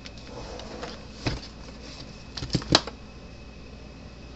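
Plastic case of a fence charger being handled and set down on a workbench: a single knock about a second in, then a quick run of three or four knocks near the three-second mark, the last one the loudest.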